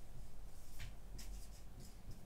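Marker pen writing on a whiteboard: a few short, high-pitched scratchy strokes, the first a little under a second in and the last near the end, as letters are written.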